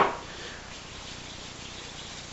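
Quiet kitchen room tone after the fading end of a sharp knock at the very start.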